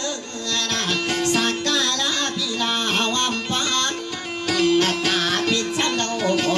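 Maranao dayunday music: a kutiyapi (two-stringed boat lute) plucking a melody over a steady drone, with a voice singing in wavering, ornamented lines.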